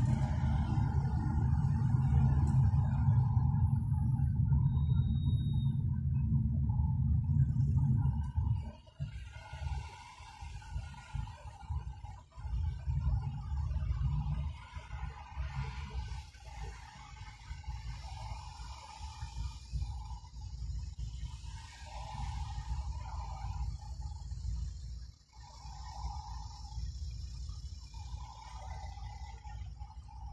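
Road and engine rumble of a car heard from inside its cabin, loud and steady at first. It drops off sharply about eight seconds in as the car slows in queuing traffic, then goes on as a quieter, uneven rumble.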